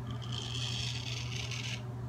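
Straight razor cutting through lathered stubble on the cheek in one stroke of about a second and a half: a scratchy rasp that cuts off sharply near the end.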